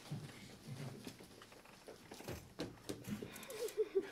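Faint rustling and crinkling of a woven plastic bag as it is handled and opened. Near the end a quick run of short, high-pitched squeaky sounds begins.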